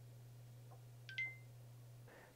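AirPods Pro (2nd generation) charging case's built-in speaker playing a short two-note rising chime about a second in, its pairing sound as the case connects to an iPhone, over a faint low hum.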